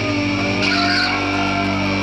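Distorted electric guitars and bass holding a sustained chord with no drumming, while a high guitar note squeals and bends up and down over it about half a second in, the sound of a metal song ringing out.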